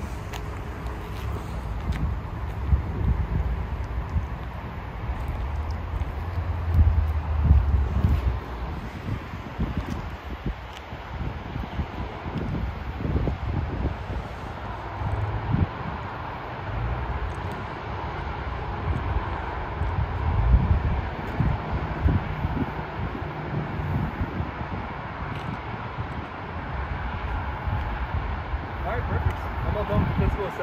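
Wind buffeting the microphone, an uneven low rumble that comes and goes in gusts over the steady background noise of an open parking lot.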